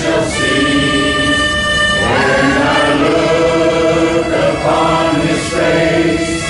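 Harmonica playing a slow melody in sustained chords, each note held for a second or two before moving to the next.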